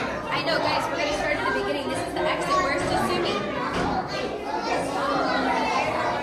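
Indistinct chatter of many overlapping voices in a large indoor hall, steady throughout.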